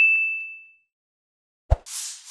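A notification-bell 'ding' sound effect for an animated subscribe-button bell, a single bright chime that rings out and fades over the first second. Near the end, a short low thump followed by a whoosh, the transition effect of an animated wipe.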